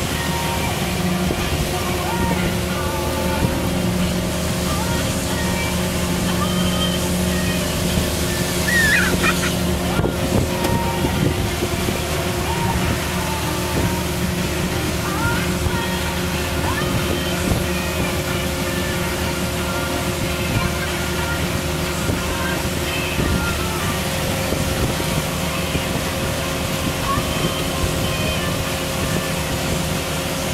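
Pontoon boat's motor running at a steady speed, a constant engine hum with the rush of water and wind over it.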